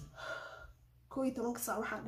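A woman's short audible gasp of breath, then she speaks for about a second.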